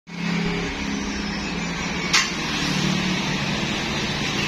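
Road traffic, with small motor scooter engines running past on the street. A single sharp click about two seconds in.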